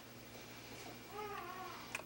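A newborn baby's short, wavering cry or whimper, starting about a second in, over a low steady hum.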